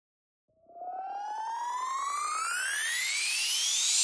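Synthesizer riser: a single electronic tone with overtones that starts about half a second in and climbs steadily in pitch, growing louder as it goes.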